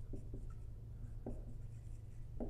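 Dry-erase marker writing on a whiteboard in a few faint, short strokes.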